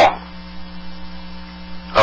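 Steady electrical hum with a faint hiss on a telephone conference-call line.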